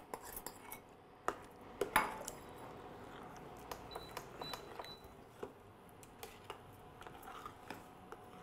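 Metal spoon clinking against a bowl and a stainless steel cooking pot while stirring, with a few sharp clinks in the first two seconds and then light, scattered taps.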